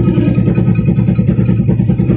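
Tatra T148 truck's air-cooled V8 diesel engine running steadily with the gearbox in neutral: a loud, even, fast-pulsing low rumble heard from inside the cab.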